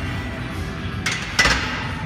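A loaded EZ curl bar clanks down onto the metal rests of a preacher curl bench, one sharp metallic strike about one and a half seconds in, just after a short rattle. Background music plays throughout.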